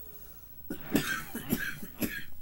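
A person coughing, several quick coughs in a row starting a little under a second in.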